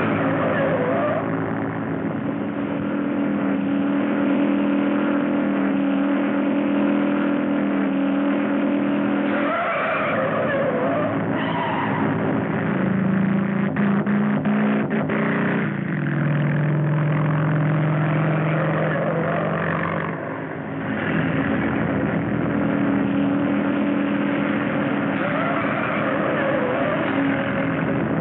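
Motor vehicle engines running steadily during a chase, their drone shifting pitch a few times, with a cluster of sharp clicks about 14 to 15 seconds in. The sound has the muffled, narrow sound of a 1930s film soundtrack.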